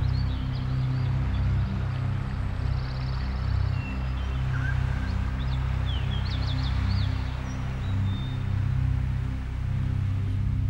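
Ambient meditation music built on a deep, sustained low drone, over a natural background with birds chirping. A cluster of quick chirps comes about five to seven seconds in.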